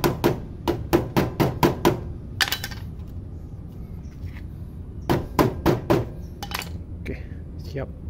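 A new rubber footrest being knocked onto a motorcycle's metal footpeg: quick sharp knocks, about four a second, for the first two seconds, then a short second run of knocks about five seconds in.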